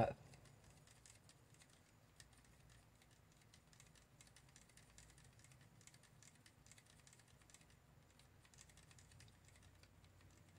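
Faint, irregular light ticks and scrapes of a wooden stir stick against the sides of a cup as thin, runny two-part polyurethane resin is stirred.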